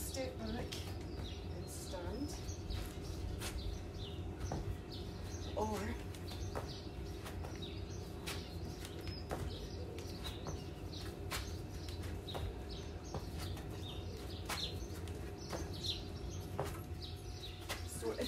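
Garden ambience: birds chirping over a steady low background hum, with scattered short clicks and light knocks.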